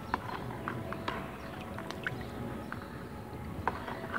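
A ribbed iron rod stirring a plastic bucket of fermented liquid fertilizer (soaked dry cow dung and oil cake), with irregular light knocks and taps as the rod strikes the bucket.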